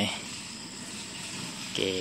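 A faint, steady, high-pitched insect chirring in the background, with no other distinct sound.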